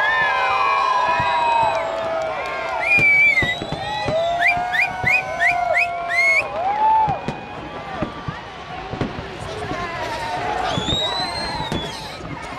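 Aerial fireworks bursting and crackling over a crowd of onlookers who shout and cheer. About halfway through comes a quick run of five short rising whistles.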